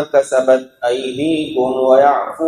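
A man reciting a Quran verse in Arabic in a melodic, chanted style, holding drawn-out notes that bend in pitch.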